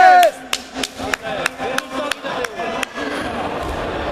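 Sharp, irregular hand claps close to the microphone, a few a second, over the low murmur of a sports-hall crowd. A shouted word trails off at the very start.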